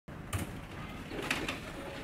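Quiet room tone with a few light clicks and knocks, about three of them spread over two seconds.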